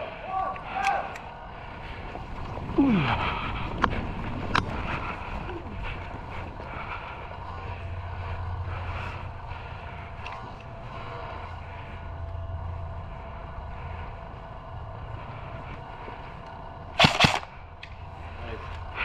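Airsoft rifle firing a short burst of a few sharp shots near the end, the loudest sound. Before it there is only quiet movement, with a couple of sharp clicks.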